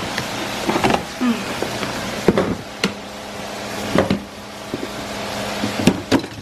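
Clear plastic storage boxes being handled: lids and box walls clicking and knocking several times, over a steady background hiss.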